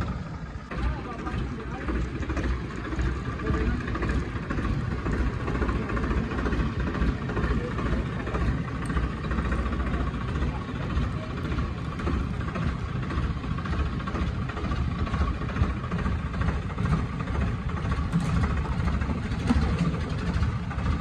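Swaraj 969 FE tractor's diesel engine running steadily under load while it pulls a large tree log on a chain.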